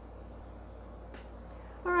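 Quiet room with a steady low hum and one faint, short click about a second in, from a tarot card being picked up and handled.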